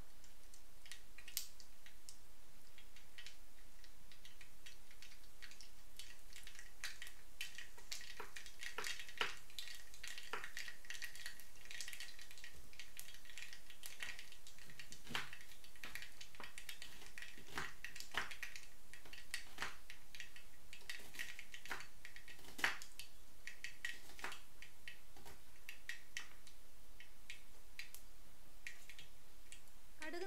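Small seeds, mustard seeds by the look, spluttering in hot oil in a pan: scattered pops and crackles over a faint sizzle. The sizzle is strongest in the middle stretch.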